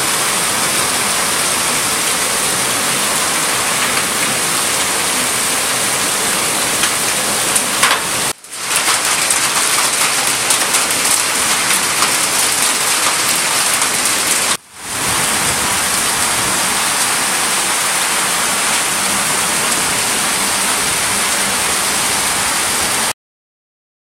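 Heavy rain pouring steadily onto a street. The sound breaks off briefly twice and then stops suddenly near the end.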